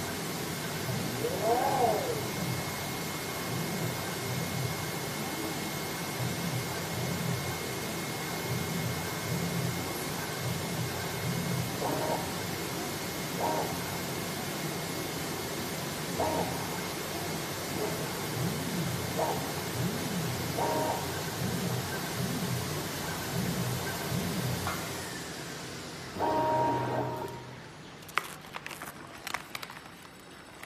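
A paper-box cutting machine running: a steady hiss with a constant high whine and a low, pulsing hum underneath. The sound dies away about 25 seconds in, and a few sharp clicks follow.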